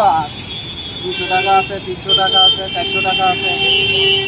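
A man talking over roadside traffic noise, with a long vehicle horn sounding in the second half.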